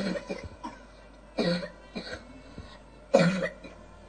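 A person coughing three times, about a second and a half apart.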